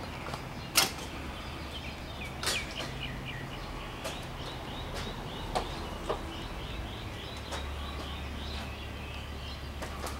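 A bird chirping a long run of quick repeated notes, about three a second, over a low steady hum, with two sharp clicks in the first few seconds.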